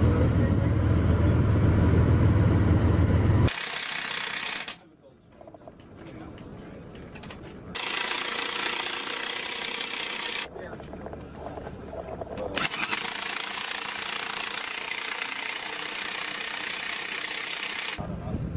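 A heavy military vehicle's engine running with a low, steady rumble that cuts off abruptly after about three and a half seconds. After that come several abrupt edits between stretches of steady outdoor noise and hiss, one of them briefly almost quiet.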